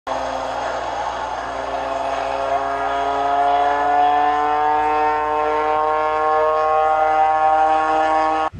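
An engine drone, a single steady note with many overtones that rises slowly and evenly in pitch over several seconds.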